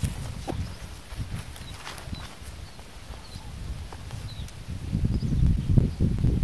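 Wind buffeting the microphone, with rustling and swishing as a butterfly net is swept through low flowering brush. The wind grows louder near the end.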